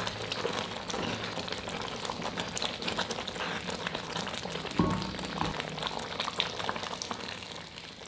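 Thick rice-and-milk mixture bubbling as it simmers in a brass pot while a spoon stirs through it, a steady crackle of small pops. About five seconds in, a single knock with a short ring, the spoon striking the pot.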